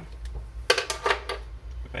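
A quick run of sharp clicks and a short clatter, about a second in, of small hard objects such as pens being handled and knocked against a wooden table.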